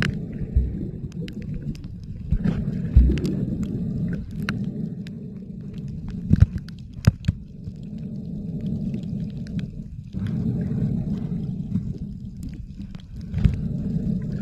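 Underwater ambience picked up by a camera's microphone beneath the surface: a steady muffled low rumble of moving water, with scattered sharp clicks and knocks.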